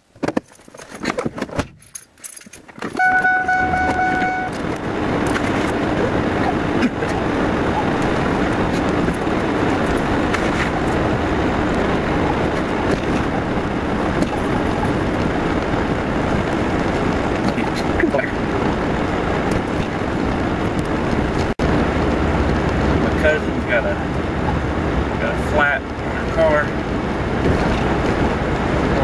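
A car being started on a frosty morning: a few clicks, then a short electronic chime, then a loud steady rush of engine and heater blower running on defrost to clear the iced-over windshield. A few faint squeaks sound near the end.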